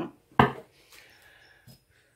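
A single sharp knock about half a second in, followed by light handling rustle and a small click, as a boxed deck of oracle cards is grabbed and brought up.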